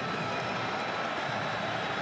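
Steady crowd noise from the spectators at a football stadium: an even wash of sound with no single event standing out.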